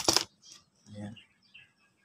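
Molded plastic case of a circuit breaker cracking apart with a few sharp clicks as it is opened, a small spring-loaded metal part inside popping free and landing on the table.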